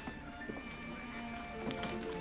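Gypsy-style violin music with held notes and sliding pitch, with a few light clicks over it.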